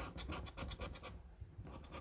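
A coin scraping the coating off a paper scratch card in quick, repeated short strokes, thinning out after about a second.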